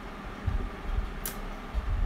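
Low handling bumps and rumble, as of the board or phone being moved in the hands, with one short click a little past a second in.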